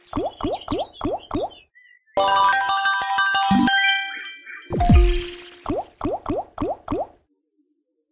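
Online slot game sound effects: five quick rising chirps as the reels stop one after another, then a short chiming jingle for a small win. Then comes a thud that drops in pitch as the next free spin starts, followed by another five reel-stop chirps.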